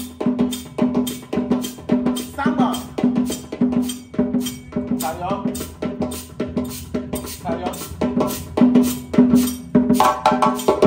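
West African drum ensemble of dunun bass drums struck with sticks and a djembe hand drum playing a steady, repeating rhythm, about two to three strokes a second. The strokes grow louder near the end.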